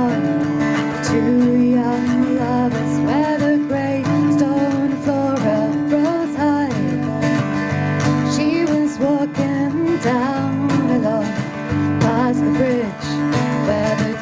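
A woman singing a folk song over strummed acoustic guitar, backed by electric bass, accordion and wooden hand percussion, played live.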